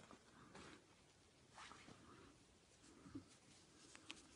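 Near silence, with a few faint rustles of hands handling crocheted yarn work about half a second, a second and a half, and three seconds in.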